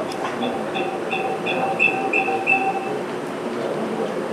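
Mobile phone ringtone: a repeating electronic tone of short beeps, about three a second, growing longer and louder, then stopping about three seconds in.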